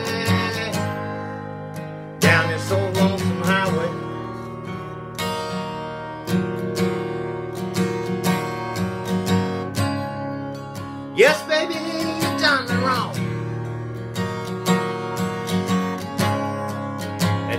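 Steel-string acoustic guitar strummed in a slow blues, an instrumental passage of ringing chords.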